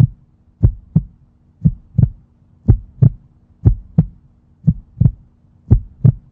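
Heartbeat sound effect: paired lub-dub thumps, about one beat a second, keeping an even rhythm over a faint steady hum.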